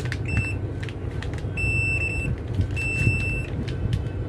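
Digital clamp meter's beeper sounding: one short beep, then two longer steady beeps, amid small clicks from the meter's buttons and test leads being handled.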